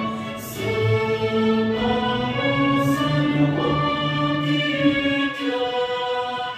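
Chinese Christian song playing: voices sing slow, long held notes that step from one pitch to the next.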